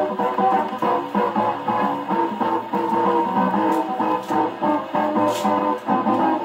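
A 1929 Madison 78 rpm dance-band record playing on an acoustic phonograph through its gooseneck reproducer. The music sounds thin and boxy, with no deep bass and little treble.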